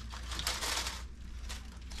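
Thin plastic keyboard membrane sheets crinkling and rustling as they are handled and pulled from a pile, loudest about half a second to a second in, with a few light clicks.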